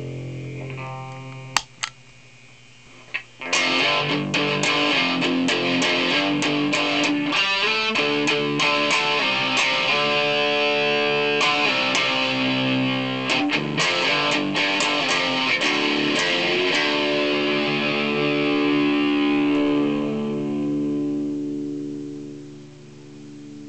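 Electric guitar (a Washburn N4) played through a Carl Martin PlexiTone overdrive pedal into a Marshall JCM800 amp, giving a distorted tone. A ringing chord dies away, then after a couple of sharp clicks and a brief lull comes a fast picked riff with many quick notes, ending on a held chord that fades near the end.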